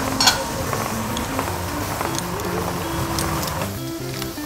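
Background music with a steady melodic line, over a sharp metallic clink about a quarter of a second in as a saucepan lid is lifted off, followed by a few faint kitchen clicks.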